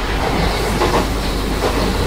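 Running noise inside a moving Kintetsu commuter train car: a steady rumble of wheels on rails, with a couple of faint clicks.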